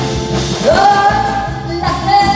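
A woman singing a Vietnamese song in twist style into a microphone, over a band accompaniment. About halfway in she slides up into one long held note.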